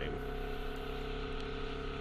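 Yamaha FZ-07's 689 cc parallel-twin engine running at a steady cruise, a constant drone with no change in pitch, over wind and road noise.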